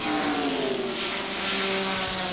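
Stock car V8 engines running flat out past the track microphone, one steady drone whose pitch falls slowly as the cars go by.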